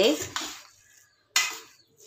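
A metal spoon strikes a stainless steel bowl of rice once about a second and a half in, a sharp clink that rings briefly and fades, during the mixing.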